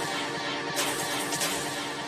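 UK hardcore dance music from a DJ set in a breakdown: the heavy bass has dropped out, leaving a held synth chord, with a wash of high noise sweeping in about three-quarters of a second in.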